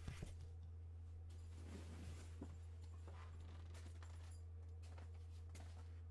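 Faint rustling and a few light knocks from foam goalie leg pads and their straps being handled and moved, over a steady low hum.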